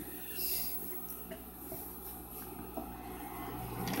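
Faint steady low electrical hum with a few light clicks, the sewing machine stopped between stitching runs.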